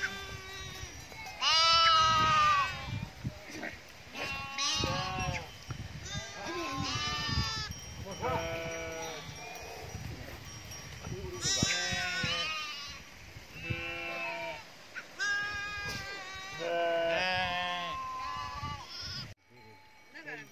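A flock of sheep and goats bleating: many separate calls, each about a second long, with a quavering, wavering pitch and some overlap. The calls cut off sharply near the end.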